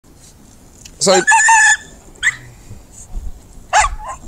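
Nervous miniature schnauzer barking: a sharp bark about a second in runs into a drawn-out high yelp, followed by two shorter barks, one near the middle and one just before the end.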